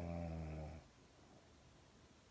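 A sleeping pug snoring once: a single low snore that stops less than a second in.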